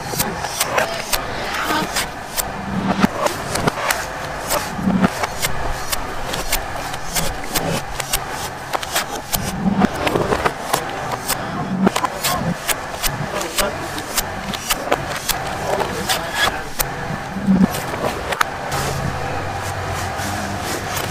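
Repeated chops and scrapes of a large knife cutting into the husk of a young green coconut held on a wooden chopping block. The strokes come several times a second, irregularly, over a steady background noise.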